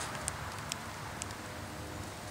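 Open wood fire crackling: a few sharp pops over a steady hiss.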